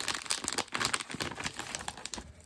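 Crinkling of a holographic plastic zip-lock bag being handled, a dense run of crackles that thins out near the end.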